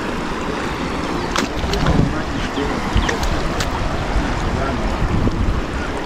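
Steady rush of floodwater with wind buffeting the microphone, broken by a few short splashing footsteps in shallow water over grass.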